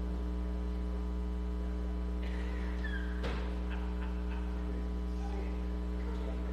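Steady electrical mains hum, a low 60 Hz buzz with its overtones, on the broadcast audio feed. A sharp click comes about three seconds in, followed by a few fainter ticks.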